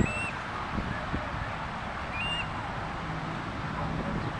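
Birds calling: a few short, high whistled notes over a steady outdoor hiss, with a low steady hum coming in about halfway through.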